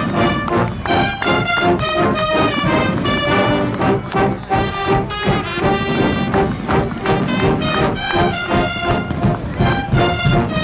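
Brass band music played loud, with trumpets and trombones in quick, rhythmic notes.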